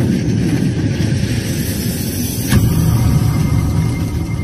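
Intro logo sound design: a loud, deep, noisy swell with a sharp hit about two and a half seconds in, after which a thin, steady high tone rings on.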